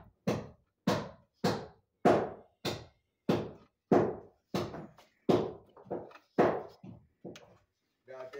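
Steady hammering on wood framing: about a dozen sharp blows, roughly one every 0.6 seconds.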